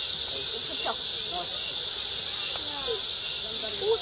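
Cicadas buzzing in a dense, steady chorus, a high even hiss, with faint voices underneath.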